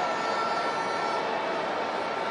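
Football stadium crowd noise, a steady, even din with no single event standing out.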